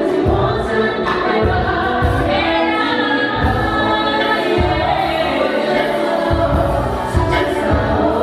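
Live band music with several voices singing together over a strong bass beat, a woman singing lead into a handheld microphone.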